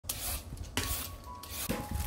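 Vegetable peeler scraping along the skin of an old yellow cucumber (nogak) in a few noisy strokes, with light background music coming in about a second in.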